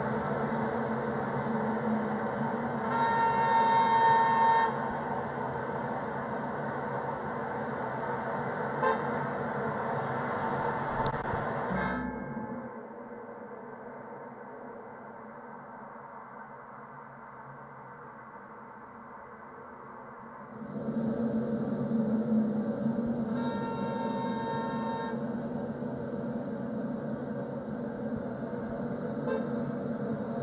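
Street traffic noise with a car horn honking twice, about three seconds in and again a little past twenty seconds, each honk about a second and a half long, heard through Sony WH-1000XM5 headphones in ambient mode. From about twelve seconds in to about twenty-one, active noise cancelling is on and the traffic turns muffled and much quieter, its high end gone; after that ambient mode returns and the traffic is clear again.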